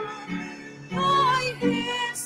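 A woman's voice singing a Tagalog hymn in held notes over piano and keyboard accompaniment, softer for a moment, then a long held note about a second in.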